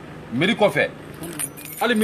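A man speaking in short phrases, with a light metallic jingle in the pause between them.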